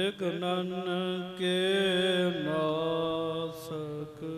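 A man's voice chanting devotional verses in long held notes, the pitch stepping down about halfway through.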